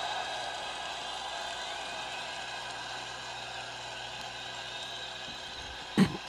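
A steady hum made of several fixed tones over a light hiss, with no change in pitch or level, and a single short knock right at the end.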